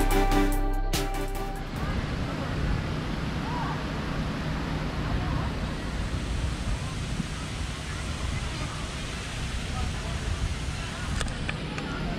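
A music track ends about two seconds in, giving way to the steady hiss of rain falling.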